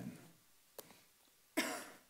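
A quiet room, then a single short cough about one and a half seconds in.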